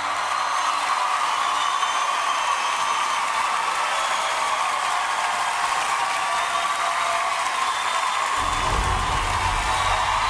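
Large studio audience applauding and cheering loudly as the song's final chord dies away at the start. A low rumble comes in near the end.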